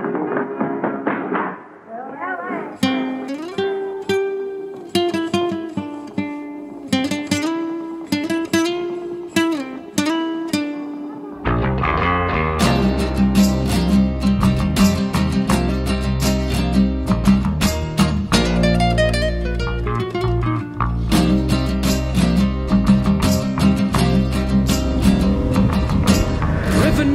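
Flamenco-rock instrumental intro: a guitar picks a flamenco-style melody, then about eleven seconds in a full band comes in with bass guitar and drums keeping a steady beat.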